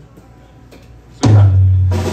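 A drum kit bursts in loud and sudden just past a second in, with a deep, ringing low end, after a quiet stretch of room sound.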